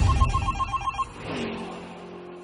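Electronic telephone ringtone: a fast trill of short high beeps, about ten a second, that stops after about a second. It is followed by a whoosh and a held low chord that fades.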